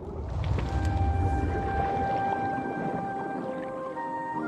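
Drama score of long held tones over a deep swell that rises at the start and fades after about two seconds, giving an underwater, whale-song-like sound.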